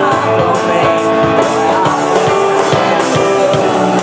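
Live rock band playing: drum kit, bass guitar, electric guitar and piano together, with a steady drum beat.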